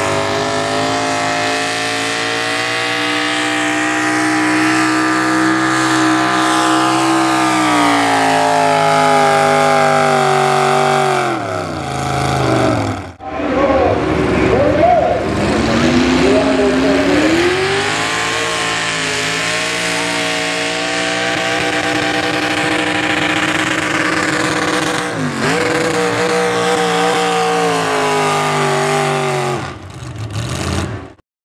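Pickup truck engines at full throttle pulling a weight-transfer sled. The first truck's engine runs high, then its pitch falls steadily for several seconds as it bogs down under the sled's load. After a break near the middle, a second truck's engine revs up and holds a high, steady pitch through its pull.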